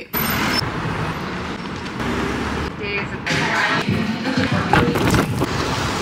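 City street traffic noise, a steady rumble of passing vehicles, broken by a few abrupt edits and mixed with faint snatches of voices and music.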